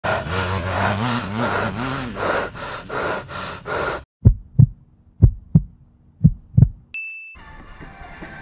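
Intro sound design: about four seconds of music, then a heartbeat effect of three double thumps about a second apart, followed by a short high beep.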